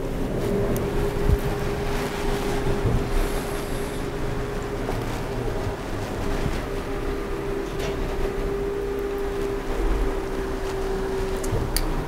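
A steady machine hum with even background noise and a few faint clicks.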